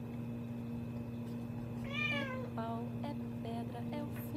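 A tabby domestic cat meowing: one rising-and-falling meow about two seconds in, then a shorter, lower call right after. A steady low hum runs underneath.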